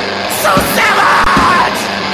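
Lo-fi garage punk recording: a singer yells a long shout, starting about half a second in and lasting about a second, over electric guitar and drums.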